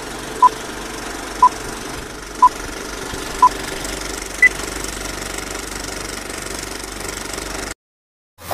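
Old film-leader countdown sound effect: a steady projector-like whir and crackle with a short beep about once a second, four at one pitch and then a fifth, higher beep. The whir carries on after the beeps and cuts off suddenly near the end.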